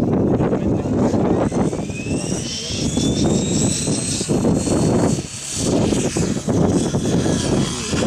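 Radio-controlled model helicopter spooling up: a whine that rises in pitch for the first few seconds, then levels off into a steady high whine, with low rumbling noise underneath.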